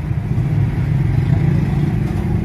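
Steady low rumble with no break, engine-like, heavy in the bass.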